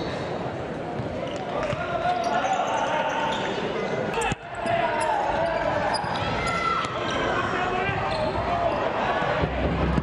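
Indoor futsal play: the ball being kicked and players' shoes squeaking on the wooden court, with players' shouts and crowd voices echoing in the hall. The sound drops out briefly about four seconds in.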